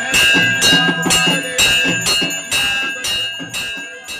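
Temple bell rung steadily for the aarti, about two strikes a second, each ringing on into the next; the ringing fades toward the end.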